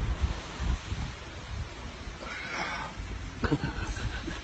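Wind buffeting the microphone in low, uneven gusts, with a short hiss a little past halfway through.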